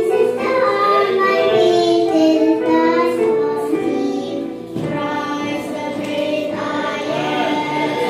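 A small group of young girls singing a Christian children's song into handheld microphones, holding long notes, with a short break between phrases about halfway through.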